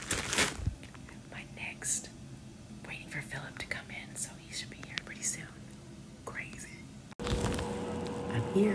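A woman whispering and speaking softly, with a brief loud rustle of handling about half a second in. About seven seconds in, the background cuts abruptly to a louder steady hum.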